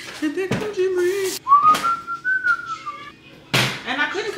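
A person whistling one long note that rises slightly and then falls, after a short held note in a lower voice. A sharp knock near the end.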